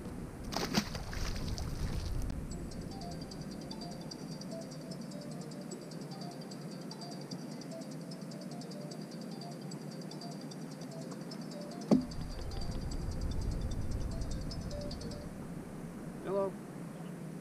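A bass splashes back into the water as it is released, then a cell phone rings steadily for about twelve seconds, a high repeating ring. A sharp knock near the end of the ringing is followed by rumbling handling noise, and the ringing stops as the call is taken.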